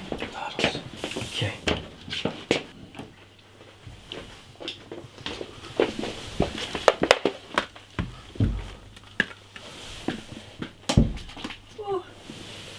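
Soft footsteps, clothing rustle and small knocks of people creeping through a dark hallway, with a whisper at the start. A low steady hum comes in about four seconds in, and there are two dull thumps in the second half.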